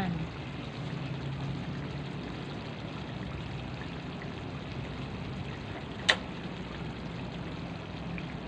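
Coconut-milk stew of green papaya and malunggay simmering in an aluminium pan over a gas flame: a steady bubbling hiss with a low hum underneath. A single sharp click about six seconds in.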